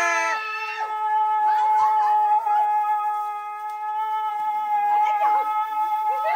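One long, steady, pitched tone with overtones, held unbroken, with short shouts breaking in over it now and then.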